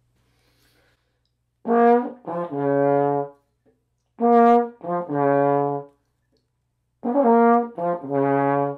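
Tenor trombone playing the same short phrase three times: a B-flat, a quick passing note, then a held D-flat a sixth lower in fifth slide position. It is a passage drilled in chunks, the repetitions evenly spaced with short gaps between.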